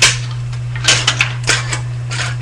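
Scissors snipping through thin aluminium soda-can sheet: several sharp, crisp snips.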